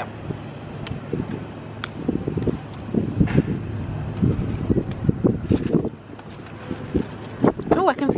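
Wind buffeting the microphone in irregular low gusts, over a steady low hum of distant traffic.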